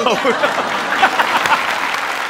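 Studio audience applauding steadily, with a few voices heard over the clapping in the first second.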